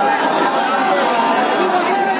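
Speech only: men's voices talking over one another, with crowd chatter in a large reverberant space.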